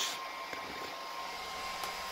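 A steady fan-like whir with a thin, constant high whine running through it.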